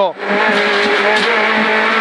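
Peugeot 208 R2B rally car's four-cylinder engine heard from inside the cabin, under load at high revs: a momentary dip in the sound right at the start, then a steady, near-constant engine note.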